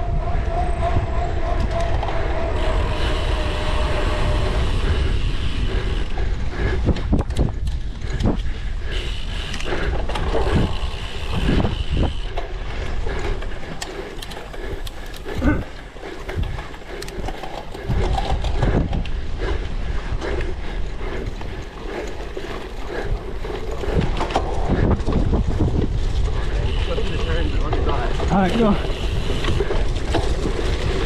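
A cyclocross bike ridden at race pace: wind buffeting the camera microphone over the rattle and knock of the bike and its tyres as it runs from a paved path onto bumpy grass.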